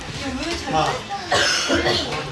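Men talking casually, with a short cough about one and a half seconds in.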